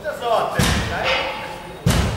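Two sudden thumps about a second and a half apart, the second sharper and louder, each with a short echo, over a man shouting.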